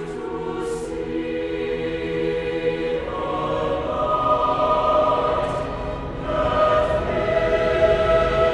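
Mixed choir singing slow, sustained chords. About three seconds in, the voices move up to a higher chord that swells louder, with soft sibilant consonants now and then.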